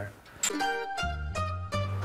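Background music of plucked strings, a short run of notes, roughly two a second, starting about half a second in.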